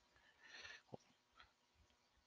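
Near silence, with faint soft sounds and a single small tick about a second in.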